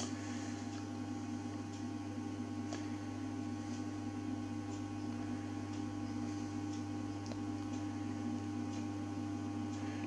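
Steady mains-frequency hum from the transformers on the bench, the ferroresonant transformer fed from a Variac, with a few faint ticks over it.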